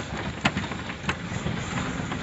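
A tractor running while it jolts along a rough dirt track: a steady rumbling, rattling ride noise, with two sharp knocks about half a second and about a second in.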